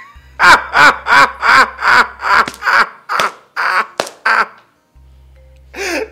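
A man laughing loudly in a long run of about a dozen rhythmic bursts, roughly three a second, dying away after about four seconds. A low steady music drone runs underneath.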